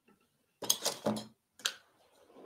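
Metal palette knife scraping and tapping against the paint palette: a scrape lasting under a second, then a short sharp click.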